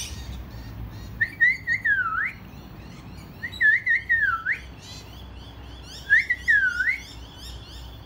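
A bird whistling the same loud phrase three times, a wavering note that ends in a falling glide, with faint high twittering of other birds between the phrases.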